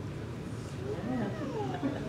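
A brief wordless voice in the congregation, a drawn-out sound rising and falling in pitch about a second in, over a low steady room hum.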